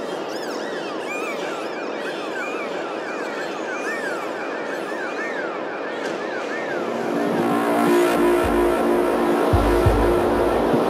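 Opening of a progressive psytrance track: a noise wash swelling slowly louder, crossed by repeated swooping electronic chirps. About seven seconds in, sustained synth notes come in, and a deep bass enters near the end.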